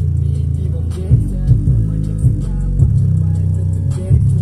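Bass-heavy rap beat played loud through a 4-inch woofer: deep bass notes that slide in pitch, under a steady pattern of drum hits.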